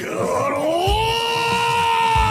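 A man's long, strained shout of the name "Garou!" in an anime voice performance. Its pitch rises over the first second and is then held.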